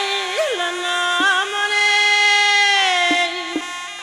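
Khorezm xalfa, a female folk singer, singing one long held note in a strong, bright voice over instrumental accompaniment. A quick upward flourish comes just after the start, and the note ends about three seconds in.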